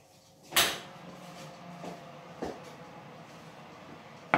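Oven door pulled open with one loud sudden clunk about half a second in, then two lighter knocks as a metal cake tin is taken out of the oven.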